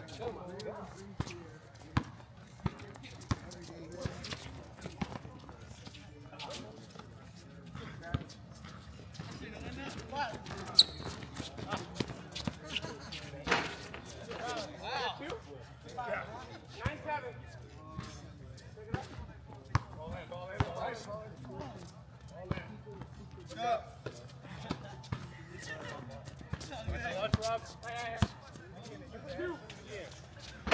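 Basketball being dribbled and bouncing on an outdoor hard court during a pickup game: irregular sharp thuds, with one much louder bang about a third of the way through. Players' distant, unclear calls come in now and then.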